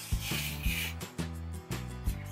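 Adhesive tape rasping as it is pulled off a roll and wrapped around a hand, over background music with a steady beat.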